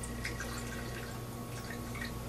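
A few faint clinks and drips of liquid as a chalice and other communion vessels are rinsed at the altar during the ablutions after communion, over a steady electrical hum.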